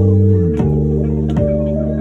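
A live band playing loud: sustained guitar and bass chords that change about half a second in and again near the end, cut through by sharp hits about every three-quarters of a second.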